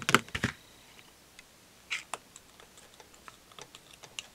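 Light clicks and taps of hands and a crochet hook working a plastic knitting loom, a cluster of louder clicks in the first half second, then scattered faint ticks.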